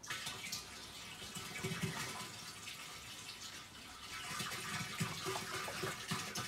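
Liquid bleach pouring in a steady stream from a plastic jug into a plastic barrel about half full of water, splashing into the water.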